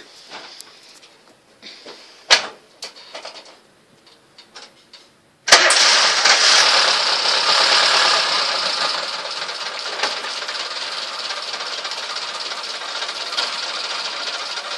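Freshly swapped engine in a Suzuki SJ-series 4x4 firing up suddenly about five and a half seconds in after a few faint clicks, running loud for about three seconds, then settling to a steadier, lower-pitched run.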